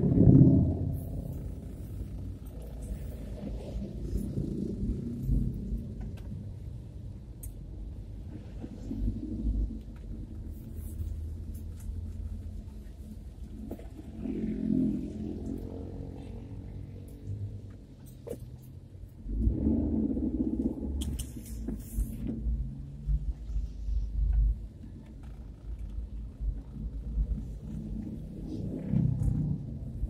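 Low, muffled rumble of a car's engine and road noise heard from inside the cabin while driving in slow traffic, swelling a few times as the car moves.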